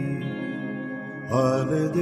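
Hindi film song: soft held instrumental chords, then a singing voice comes in about a second and a half in, with the music growing louder.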